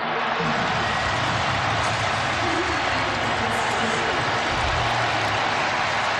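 Stadium crowd cheering steadily at a touchdown.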